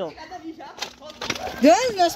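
A few sharp knocks or taps in the first half, then a raised voice shouting near the end.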